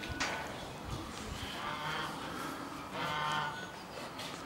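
Young brown bear giving two faint, low moaning calls, the first about midway and the second near the end.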